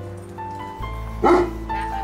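Background music with a steady tune, and one short dog bark a little past halfway through.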